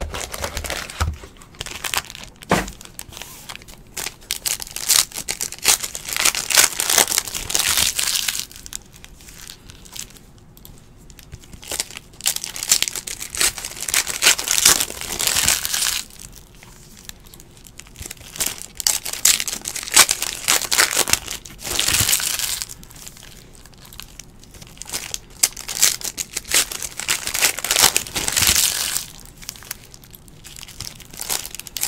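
Foil trading-card pack wrappers crinkling and tearing as the packs are handled and ripped open. The sound comes in bouts of a few seconds, with quieter gaps between.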